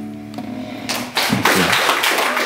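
The last strummed chord of an acoustic guitar rings out and fades as the song ends, and about a second in an audience bursts into applause, which becomes the loudest sound.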